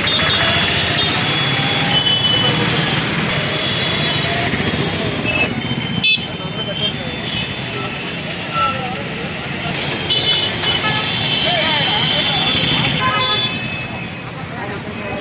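Busy town street traffic: motorbikes and other vehicles running past with horns tooting now and then, mixed with voices of people nearby.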